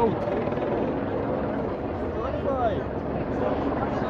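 Police helicopter circling overhead: a steady drone of rotor and engine, with voices of people in the street mixed in.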